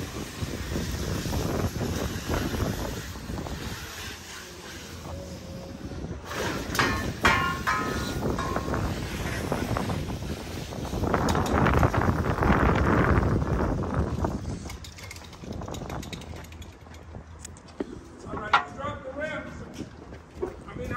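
Vehicle engine running and wind on the microphone as an engineless SUV is pulled along on a tow strap across concrete. The sound swells in the middle, and short indistinct voices come twice.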